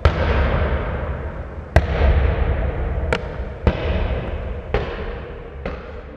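A leather soccer ball bouncing down concrete stadium steps: about six sharp, echoing thuds at uneven intervals, each hit ringing out in the concrete stand and the whole fading steadily.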